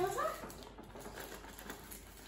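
A voice trails off in the first half-second, then faint rustling and light ticks from a paper-wrapped gift box being handled and turned over.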